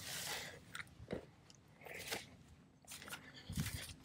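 Irregular rustling and crunching of footsteps through long grass, with a low thump near the end.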